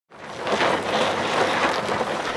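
A steady rushing noise, like wind or road noise, that fades in over the first half second and then holds.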